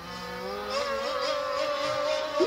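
Mystic C5000-R radio-controlled racing boat's motor running at high speed, a steady high whine that climbs slightly about half a second in and then holds.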